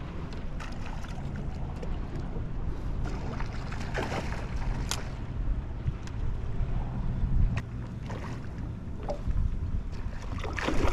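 Steady wind noise on the microphone aboard a small aluminium boat, with water moving against the hull. A few sharp clicks cut through it, the loudest about five seconds in.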